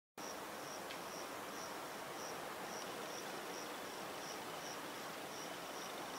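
Cricket chirping at night, short high chirps repeating evenly about three times a second over a faint steady hiss.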